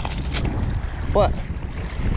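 Wind buffeting the microphone with a steady low rumble, and one short shouted call about a second in.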